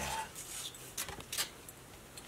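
Faint rustling and scraping, with a couple of sharp knocks about a second in, as a black-painted cardboard pirate hat is drawn out of a metal bin.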